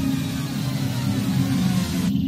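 Goa trance track opening: a hissing noise sweep builds over a low droning synth pad and cuts off suddenly at the end.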